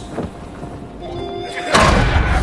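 Animated-film score music under a quiet stretch with a few held notes, then a sudden loud, deep hit near the end.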